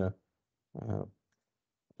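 A man's lecturing voice: the tail of a phrase, then a short hesitant vocal sound about a second in, with quiet pauses between.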